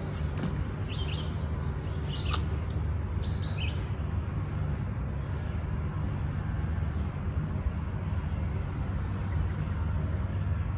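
Birds chirping, a few short high calls in the first half, over a steady low outdoor rumble.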